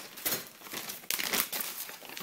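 A plastic pet-food bag crinkling as it is picked up and handled, in irregular rustles that are loudest just after a second in.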